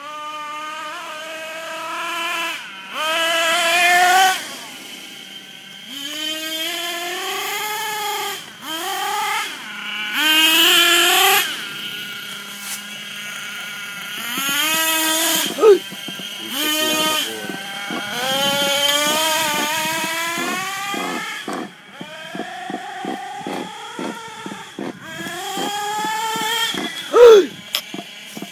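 Radio-controlled buggy's motor revving in repeated throttle bursts, the whine climbing in pitch as it accelerates and dropping as it lets off, over and over, loudest around the fourth and eleventh seconds.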